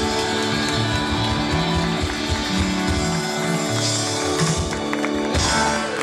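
Live band playing: electric guitars over bass and drums, with a chord held steady.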